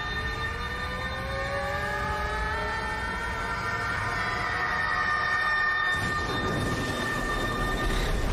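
Episode soundtrack: several sustained tones gliding slowly upward over a low rumble, with a deeper rumble building about six seconds in.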